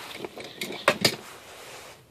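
Handling noise: rustling, with two short clicks a little after a second in.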